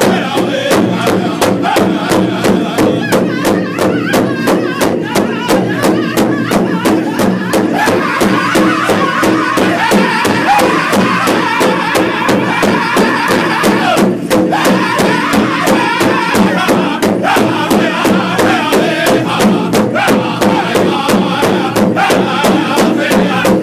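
Powwow drum group: several men beating one large shared drum together with sticks in a steady beat of about three strokes a second, while singing in unison over it.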